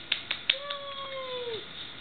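A toddler claps three times quickly, then sings one long, high 'ahh' that slides down in pitch at its end.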